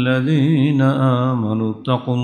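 A man chanting a Quranic verse in Arabic in a long, melodic drawn-out line, with a wavering ornament on one held note and a brief break for breath near the end.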